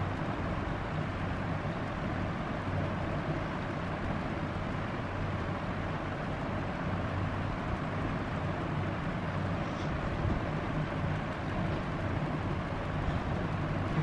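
Steady low hum with an even hiss of room noise throughout, with no distinct events.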